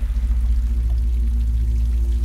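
Steady rain falling, over a deep, steady low drone with a few held low tones.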